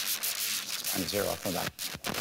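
Scratchy rubbing noise on the microphone, the kind made when clothing brushes a clip-on mic, over a man's speech heard in short bits about a second in.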